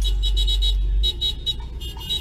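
Car horns honking in a traffic caravan, a run of quick high-pitched beeps that breaks off and returns near the end, over a low rumble that drops away about a second in.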